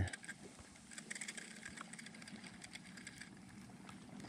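Spinning reel being cranked slowly on a lure retrieve: a faint, rapid ticking whir from the reel's gears and rotor.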